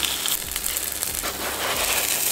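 Stuffed flatbread dough sizzling steadily with a fine crackle in a hot pan.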